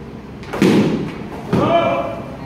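Two heavy thuds of padded soft-kit swords striking shields, about half a second in and again about a second and a half in, with a short shout over the second, echoing in a large hall.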